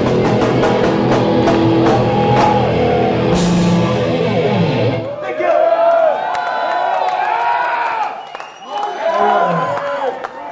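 Live heavy metal band (guitars, bass and drums) playing the closing bars of a song, which stops about halfway through. The crowd then cheers, shouts and whistles.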